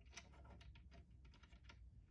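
Faint, quick little clicks of a metal nut being spun by hand onto a bolt.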